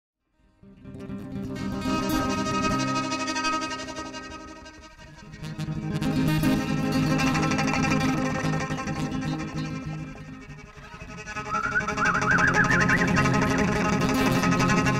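Live instrumental song intro on acoustic guitar and violin. It starts just after the opening and swells and eases in three waves, and near the end a high wavering line with vibrato rises above the rest.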